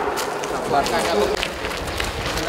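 Indistinct men's voices talking in a group, with a few light clicks and scuffs.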